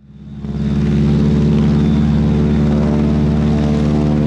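A loud, steady low drone made of several held tones, fading in over about half a second and then holding level.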